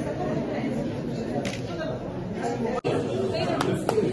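Indistinct chatter of many people talking at once in a large room. It breaks off briefly about three-quarters of the way through, and a few sharp clicks follow.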